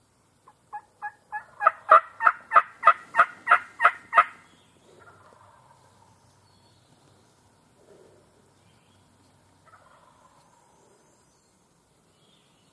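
A series of about a dozen loud turkey calls, evenly spaced and growing louder, over the first four seconds. About a second later a wild turkey gobbler gobbles faintly in the distance, and it gobbles faintly again near the end.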